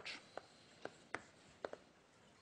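Chalk writing on a blackboard: a series of short, sharp taps and scratches as the letters are struck and drawn, about six in two seconds.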